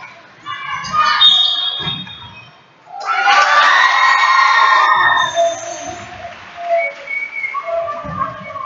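A basketball bouncing on a hardwood court in a large hall, with girls' high-pitched shouting from players and spectators. About three seconds in, a loud burst of shouting and cheering lasts roughly two seconds.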